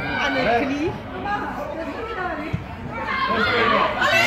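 Several voices calling and chattering over one another, with louder high-pitched shouting near the end. A single sharp knock about two and a half seconds in.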